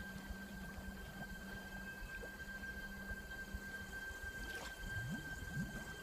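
Faint water on a pond surface, with a few low bubbling gurgles near the end as bubbles break the surface, over a steady hum and a faint high tone.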